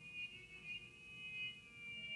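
Brass quintet playing very softly: thin, high held tones from a trumpet in a metal straight mute, with faint low notes beneath.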